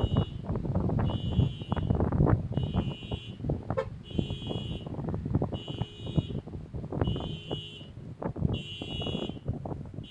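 Wind buffeting the microphone with cloth flapping, under a high electronic beep that repeats about once a second, each beep about half a second long.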